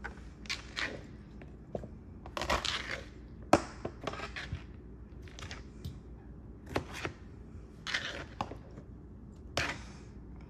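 Halved cherry tomatoes picked off a plastic cutting board and dropped by hand into a disposable aluminium foil pan: a scatter of irregular light taps and clicks, with one sharper knock about three and a half seconds in.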